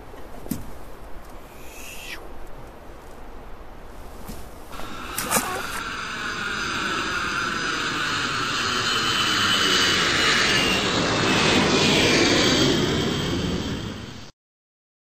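An aircraft passing overhead: a rushing sound that comes in about five seconds in, swells with a sweeping, shifting quality and is loudest near the end.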